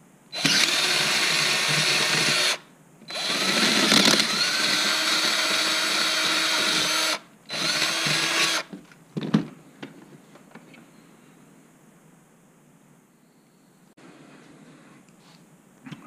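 Cordless drill running in three bursts, about two seconds, four seconds and one second long, boring out the bolt holes in a motorcycle's stock dash console. A few short clicks follow shortly after the last burst.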